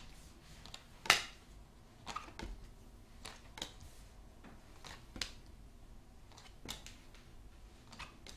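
Tarot cards being drawn from the deck and laid on a marble tabletop: a series of short, sharp card snaps and taps at irregular intervals, the loudest about a second in.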